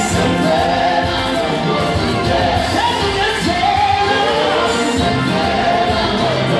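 Live gospel music: many voices singing together, backed by a drum kit.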